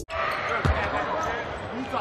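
A basketball bouncing on a hardwood arena court, with a sharp thud about two-thirds of a second in and another near the end, over steady arena crowd noise.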